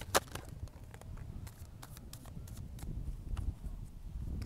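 Tarot cards being handled and laid out: a loose series of light snaps and clicks, one sharper snap right at the start, over a low wind rumble on the microphone.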